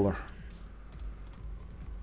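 A few scattered clicks of computer keyboard keys being tapped.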